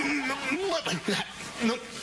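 A person's voice humming nasal, hesitant 'mm' sounds, starting on a steady note and then sliding up and down in pitch, before breaking into speech near the end.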